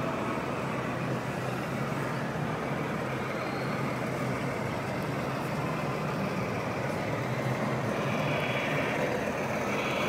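Simulated diesel truck engine sound from an RC fire tanker truck's sound module, running steadily as the model drives slowly.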